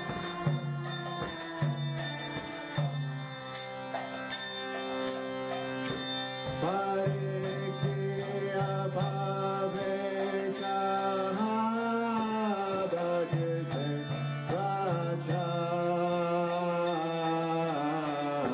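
Devotional kirtan chanting: a voice sings over a sustained drone, and small hand cymbals strike about twice a second to keep the beat.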